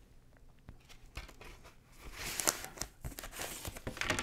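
A poly-lined paper record inner sleeve rustling and crinkling as an LP is slid out of its cardboard jacket. A few light clicks come first, and the rustle is louder from about halfway in.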